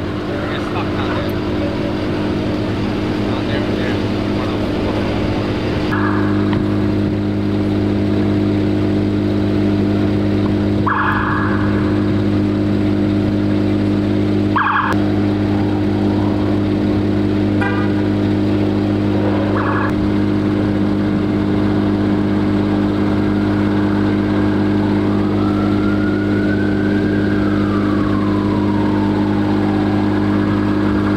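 Steady low drone of idling emergency-vehicle engines, with a few short high tone blips scattered through. Near the end a siren rises and then falls.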